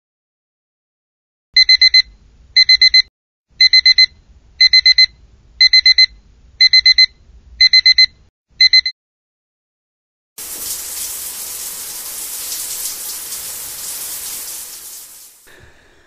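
Digital alarm clock beeping in quick bursts of four, about once a second, eight times over, then stopping. After a short silence a shower runs with a steady hiss for about five seconds and fades out.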